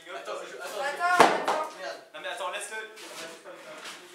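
A single sharp bang about a second in, the loudest sound, over people talking.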